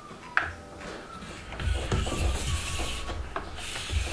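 A Logitech G560 speaker being handled and moved on a desk: a sharp click about half a second in, then rubbing and scraping with low bumps that grow louder toward the end.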